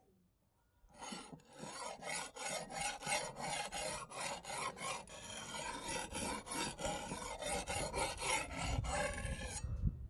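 Edge of a motorcycle-brake-disc axe head rubbed back and forth on a wet sharpening stone, steel grinding against stone in quick rasping strokes about three a second. The strokes start about a second in and stop just before the end.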